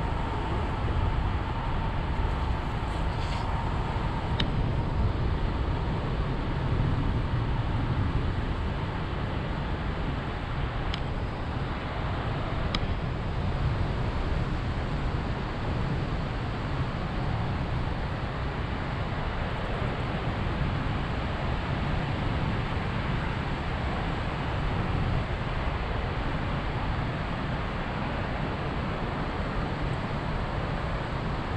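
Wind buffeting the camera's microphone as a tandem paraglider glides through the air: a steady, low rush of air noise, with a few faint ticks.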